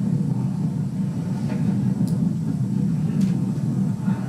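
Steady low rumble on the soundtrack of old videotape footage played back through room speakers, with a couple of faint clicks about two and three seconds in.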